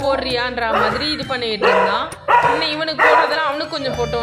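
A dog barking, with a person's voice alongside.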